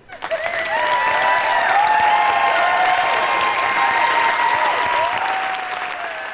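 Theatre audience applauding loudly, with cheering voices held over the clapping. It builds within the first second and thins out near the end.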